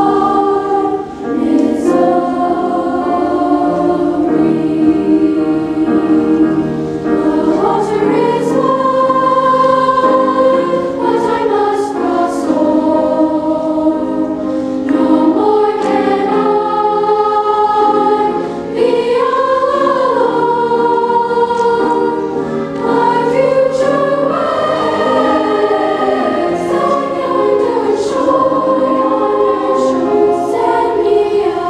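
A school choir of young girls singing, in long held notes, with one short break between phrases about two-thirds of the way through.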